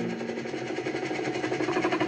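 A fast, even mechanical pulsing, about a dozen beats a second, growing louder near the end.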